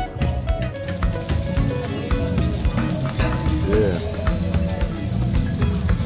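Split spiny lobsters sizzling on a hot flat metal cooking plate: a steady dense hiss that swells in about a second in, with music underneath.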